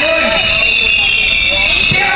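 A loud, distorted amplified voice, with a harsh steady buzz running under it.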